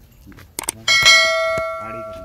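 Two quick mouse clicks, then a bell struck once about a second in, ringing clearly and dying away slowly: the click-and-bell sound effect of a subscribe-button animation.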